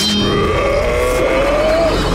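A sharp hit, then one long cry that rises slowly in pitch for nearly two seconds, over a steady low rumble.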